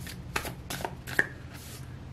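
Tarot cards being handled as the next card is drawn from the deck: a handful of short flicks and taps, the sharpest a little over a second in.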